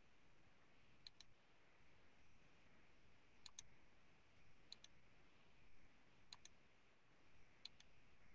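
Faint computer clicking over near silence: five quick double clicks, a second or two apart.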